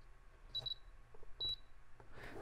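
Spektrum DX6i radio transmitter beeping as its menu roller is pressed to step back out of the setup menus: a quick double beep about half a second in and a single beep about a second and a half in, with faint clicks.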